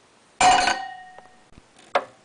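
A small glass bottle dropping into an enamel stockpot: one sharp clink that rings briefly and dies away, then a short click near the end.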